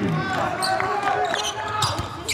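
Basketball being dribbled on a hardwood court, with players' voices calling out.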